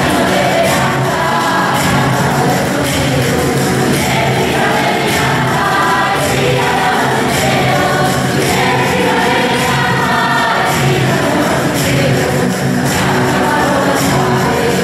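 A choir singing a hymn together, over a steady beat of jingling percussion at about two strikes a second.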